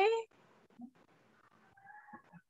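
A woman's voice ends a drawn-out question on a rising pitch, then a pause of near silence on the call, with only faint, barely audible traces.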